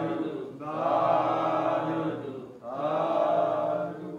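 Buddhist chanting: long, drawn-out phrases held on a steady pitch. One phrase ends just after the start, a second runs about two seconds, and a third begins near the end, each separated by a brief break.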